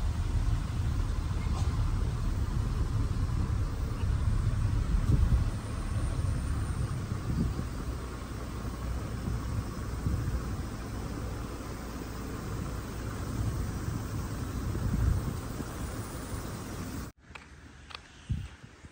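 A car driving along a road: a steady low rumble of tyres and engine, heard from the moving vehicle. It cuts off abruptly near the end.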